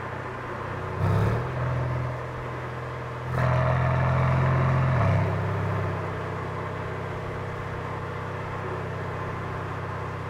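Mercedes-AMG C63 S's 4.0-litre twin-turbo V8, fitted with an Akrapovic exhaust, driving in comfort mode. It gives a short throttle blip about a second in and a louder pull from about three seconds in. That pull ends in a drop in pitch like an upshift, and the engine then settles into a steady cruising drone.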